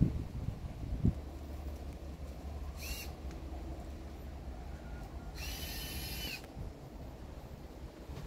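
A bird calling twice with a high, even-pitched note: a short call about three seconds in and a longer one lasting about a second a little later, over a steady low rumble of wind on the microphone.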